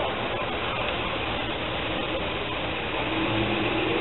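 Steady outdoor background noise with no distinct events, with faint voices in it.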